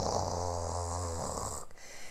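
A woman's low, rasping throat growl, held for about a second and a half, imitating her stomach churning.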